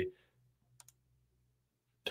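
Two faint, quick computer clicks about three-quarters of a second in, otherwise near silence with a faint low hum.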